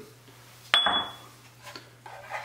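A single sharp clink with a brief high ring, about three-quarters of a second in: a small ceramic ramekin knocking against the rim of a frying pan as egg yolk is tipped into the sauce.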